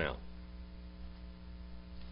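Steady, low electrical mains hum with a ladder of even overtones.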